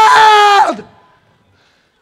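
A man's loud, sustained cry held on a high pitch, which slides sharply down and breaks off less than a second in.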